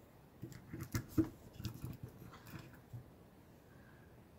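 An irregular run of light clicks and knocks from a broken tile and a glue applicator stick being handled on a tabletop, the loudest about a second in.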